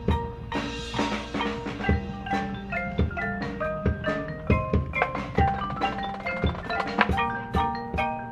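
Marching band percussion: marimbas and xylophones playing a quick stepping melody of short struck notes, with sharp drum hits throughout.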